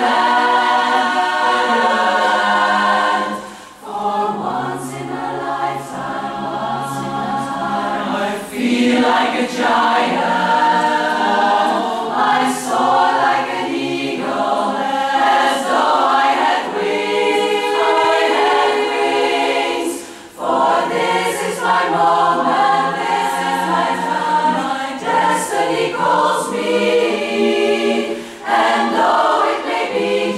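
Women's barbershop chorus singing a cappella in four-part close harmony, with brief breaks between phrases about four seconds in and again about twenty seconds in.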